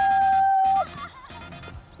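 A woman's drawn-out cry of 'yattaa!' ('yay!'), celebrating a holed putt, held on one steady high note and cutting off just under a second in.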